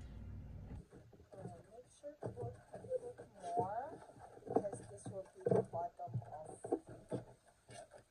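Indistinct talking in the background, not clear enough to make out, with short knocks and rustles of a stiff paper bag being picked up and handled.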